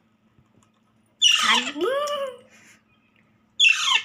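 Parakeet chicks giving two loud, harsh begging squawks while being hand-fed: the first about a second in, falling and then rising and falling in pitch, the second near the end, falling in pitch.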